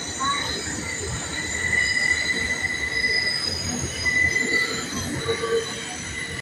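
New York City subway 4 train running, its steel wheels squealing on the rails over a steady low rumble. The thin high squeal swells and fades twice.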